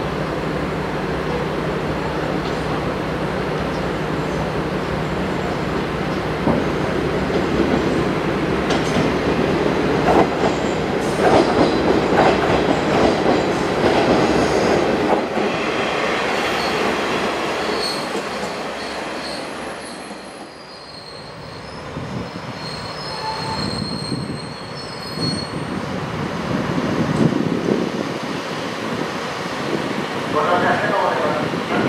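A KiHa 147 diesel railcar coming in and passing close, with its engine running and its wheels rumbling and rattling over the track. As it slows, thin high-pitched wheel squeal comes in for several seconds about halfway through.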